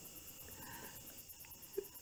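Crickets chirping faintly in a steady, rapid, high-pitched pulse.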